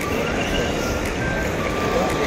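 Airport terminal hall ambience: a steady din with a few short, high electronic tones sounding now and then.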